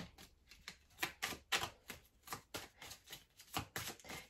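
A tarot deck being handled and shuffled in the hands: a quick, irregular run of light card clicks and flicks as cards are worked through the deck and drawn.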